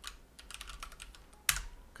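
Computer keyboard typing: a quick run of light key clicks, then one louder keystroke about one and a half seconds in as the Enter key is pressed.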